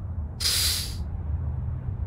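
A man's sharp, hissing breath blown out through the mouth, lasting about half a second, a little way in, over a faint low hum.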